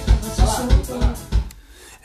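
Electric bass played over a band backing track: a few low, punchy notes, then the music stops about a second and a half in.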